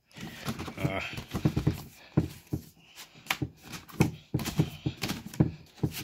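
Cardboard box scraping and rustling, with irregular sharp clicks and knocks, as a hard plastic carrying case is worked out of its tight-fitting box.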